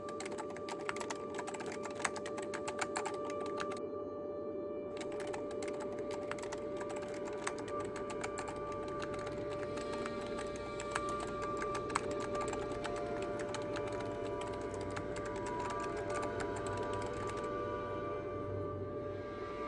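Rapid computer-keyboard typing over background music with a steady held tone. The typing pauses for about a second around four seconds in and stops shortly before the end.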